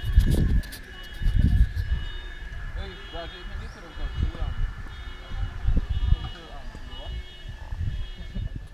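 Low thumps and rumble from the camera being moved and set down, with faint distant voices and a steady high tone throughout.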